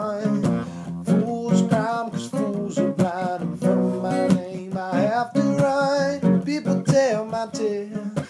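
Acoustic guitar strummed as accompaniment to a man singing.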